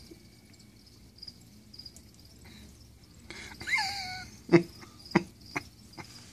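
A few sharp crunches in the second half as a roach is bitten and chewed, coming just after a short voice sound that falls in pitch. A faint high chirping runs underneath.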